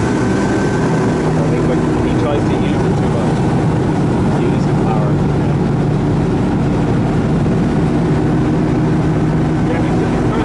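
Ski tow boat's engine running at a steady towing speed, with the rush of water from the wake and spray behind the boat.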